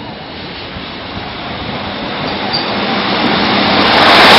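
Diesel multiple unit train approaching on the line, its engine and wheel noise building steadily louder as it nears, with a faint steady engine hum coming through in the second half.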